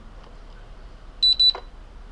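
JJRC X1 quadcopter transmitter's buzzer giving a short, high-pitched double beep about a second in, the sound that signals the transmitter has been unlocked.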